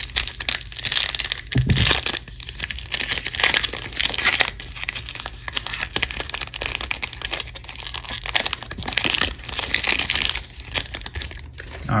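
Plastic wrapper of a 2021 Topps Big League baseball card pack crinkling and tearing as it is ripped open by hand: a dense, continuous run of crackles.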